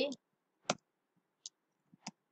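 Computer keyboard keys being typed: a couple of separate, widely spaced sharp key clicks, the clearest about two-thirds of a second in.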